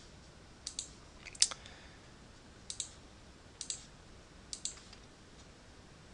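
Computer mouse button clicked about five times, roughly a second apart, each mostly a quick double tick of press and release. The one about one and a half seconds in is the loudest.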